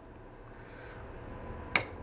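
A single sharp snip near the end as the cutting jaws of a pair of pliers cut through a length of wire.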